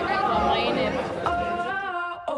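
Indistinct chatter of several voices talking at once, with steady held musical tones coming in for the last part.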